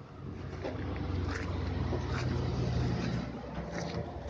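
A steady low drone of a motor, with a few faint scuffs.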